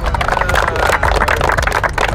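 A group of people clapping their hands: dense, irregular applause.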